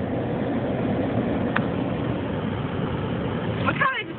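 Steady noise of a car moving slowly with its window open: engine, tyre and wind noise on the microphone, with one brief click a little past one and a half seconds in.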